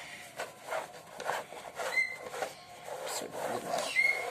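Cloth towel rubbed and scrubbed over a washed bird-cage part in quick, irregular strokes, drying it after washing.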